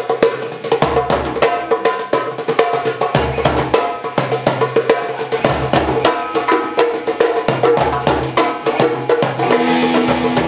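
Live hand-drum jam on dhol, dholki and darbuka: fast, dense crisp strokes, with a deep bass boom about every two seconds.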